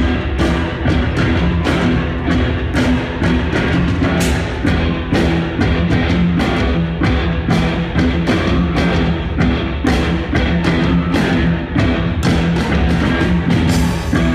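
Live rock band playing loud, amplified music through a concert PA, with a drum kit keeping up a steady run of sharp percussion hits under electric guitar and cello, heard from the audience on a phone microphone.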